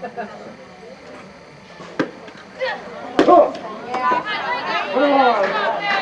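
A single sharp smack about two seconds in, a softball pitch popping into the catcher's mitt, followed by several voices calling out from players and spectators.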